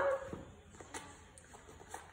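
Faint handling noise of shoe insoles being swapped between the hands: a few soft taps and rustles about halfway through.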